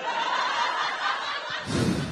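Audience laughing at a stand-up joke: a spread of many people's laughter that eases off after about a second and a half.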